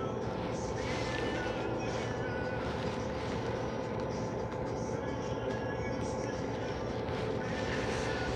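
A steady background hum made of several held tones, with faint, indistinct voices underneath.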